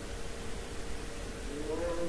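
Quiet room noise with a faint steady hum; about one and a half seconds in, a faint, drawn-out pitched call begins in the background, wavering up and down in pitch.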